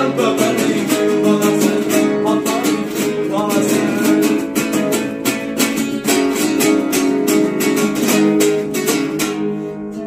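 Classical nylon-string guitar played solo with rapid strummed chords, the strokes coming fast and close together. The playing eases and the last chord fades near the end as the piece closes.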